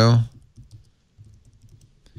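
Typing on a laptop keyboard: light, irregular key taps.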